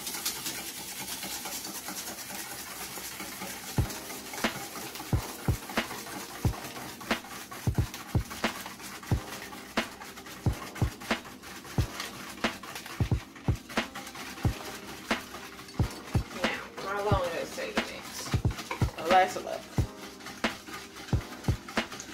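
A metal utensil knocking and clicking against a metal mixing bowl as instant pudding mix is stirred into milk, in short irregular strikes about one or two a second.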